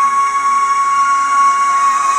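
A female pop singer holding one long, high sung note, steady in pitch, over a recorded backing track.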